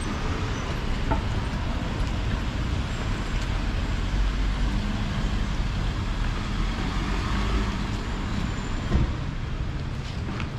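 Street traffic noise: cars passing on a narrow city street with a steady low rumble, and a faint engine hum in the middle. A single short knock comes about nine seconds in.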